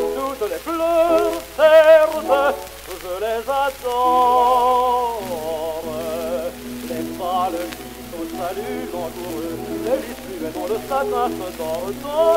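A man singing a French art song with a wide vibrato, accompanied by sustained piano chords. It is an old historical recording with a steady background of surface noise.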